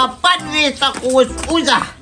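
A woman's voice crying out rapidly in distress, a quick run of sharp, pitched syllables.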